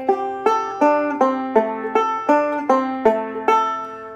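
Recording King RK-R20 resonator five-string banjo picked slowly, one ringing note at a time at about two and a half to three notes a second, as a lesson demonstration of a bluegrass right-hand roll phrase in F. The last note is left to ring and fade near the end.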